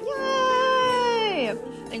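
A single long, high-pitched drawn-out vocal call, held steady for about a second and a half and then sliding down in pitch.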